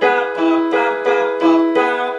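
Piano playing a held E major seventh chord, its notes struck again in a steady pattern about two to three times a second.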